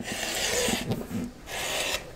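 Rotary cutter rolling along the edge of a quilting ruler, slicing a strip of HeatnBond Lite-backed cotton fabric against a cutting mat. There are two scraping cutting strokes, with a short pause between them about a second in.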